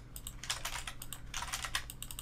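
Typing on a computer keyboard: quick runs of keystrokes with short pauses between them, over a faint steady low hum.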